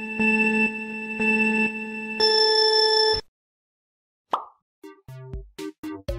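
Kahoot! quiz countdown sound: a synth tone that pulses about once a second, steps up to a higher tone and cuts off sharply about three seconds in. A single short swoosh follows near the middle. Near the end the Kahoot! question music starts, an electronic track with a drum-machine beat.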